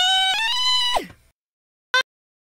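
Solo sung vocal track, heavily pitch-corrected in Cubase, with an unnaturally flat, robotic pitch: a high held note steps up, then slides steeply down and cuts off just past a second in. A short blip of the same voice near the end.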